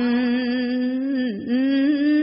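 A woman chanting Khmer smot, Buddhist verse sung slowly and melismatically. One long held note dips briefly past halfway, then carries on a little higher.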